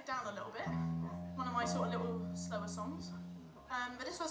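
An amplified guitar rings out a single held low note for a few seconds, with a second, lower note starting near the end, between songs with talking over it.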